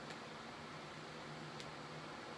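Steady low hum and hiss of an electric pedestal fan running, with one faint click about one and a half seconds in.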